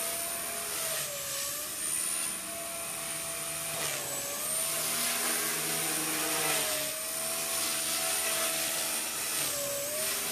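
Electric motor and rotor whine of an HK250GT radio-controlled helicopter in flight: a steady high whine that briefly sags in pitch and recovers about four times, every two to three seconds, as the head speed dips.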